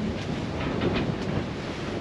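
Steady rush of wind on the microphone and sea noise aboard a sailing catamaran under way, with a few faint clicks.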